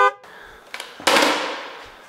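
The tail of a censor bleep cuts off at the start. Then, about a second in, comes a single loud bang that dies away over most of a second.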